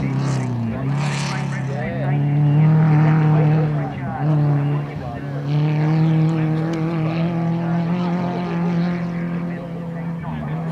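Super 1650 class off-road race buggy's engine running hard as it drives past. The pitch dips briefly right at the start and again around four to five seconds in, with a lift or gear change, and otherwise holds a steady high note.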